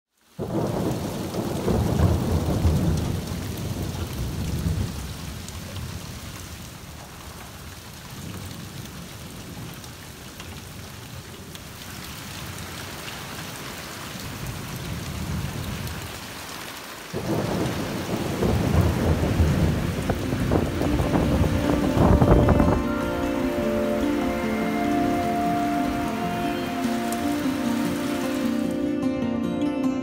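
Steady rain falling and dripping off a roof edge, with a long roll of thunder at the start and another about 17 seconds in. Music fades in near the end.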